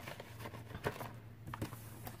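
Faint handling of paper banknotes and a plastic cash envelope in a binder: light rustling with a few soft taps, the sharpest a little under a second in.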